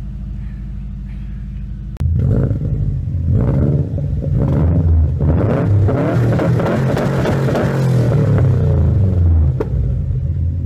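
Car engine idling steadily, heard from inside the car. About two seconds in it jumps to a much louder, uneven exhaust rumble at the tailpipe.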